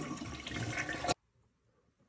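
Toilet flushing with its water supply shut off, water rushing down the bowl as the tank drains without refilling. The rush cuts off suddenly just over a second in.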